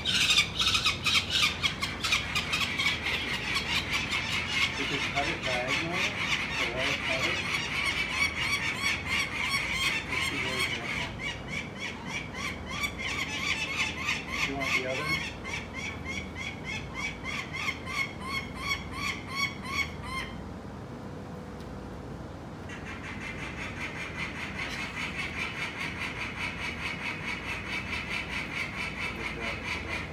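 Peregrine falcon giving its alarm call at the nest: a long, rapid series of harsh kak notes, several a second. It breaks off for about two seconds about two-thirds of the way in, then starts again. This is the typical call of an adult peregrine protesting people handling its young.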